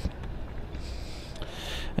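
Low, steady background noise with no distinct sound event.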